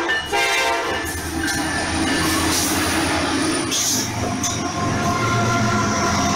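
Train sound effect: a train horn sounding for about the first second and a half, then a train running on the rails with a steady noise and thin high squealing tones over it.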